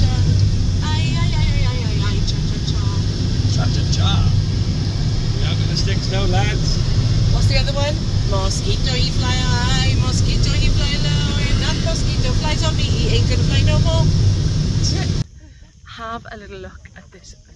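Steady low road and engine rumble inside a moving car's cabin, with people talking indistinctly over it. It cuts off sharply near the end, giving way to much quieter outdoor sound.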